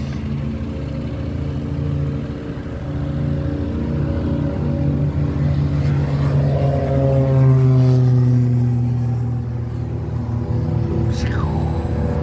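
Single-engine propeller light aircraft taking off and climbing past, its engine drone growing louder to a peak about seven or eight seconds in, then falling in pitch as it passes and draws away.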